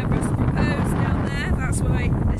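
Strong wind buffeting the microphone, a heavy, continuous rumble, with a voice coming through it faintly.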